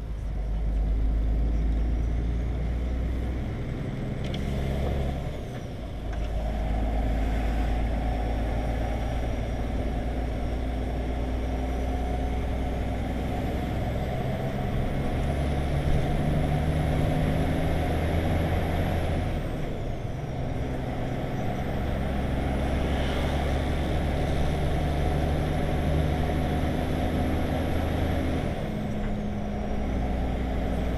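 Heavy truck's diesel engine running under load, heard from the cab, its note breaking off and picking up again several times as it changes gear. A faint high whine climbs, holds and falls away twice along with the engine, typical of a turbocharger.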